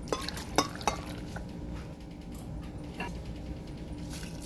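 A few sharp clinks and knocks of a bowl against a glass blender jar as ingredients are tipped in onto chunks of fruit. The loudest clink comes about half a second in, and a lighter one comes near the three-second mark.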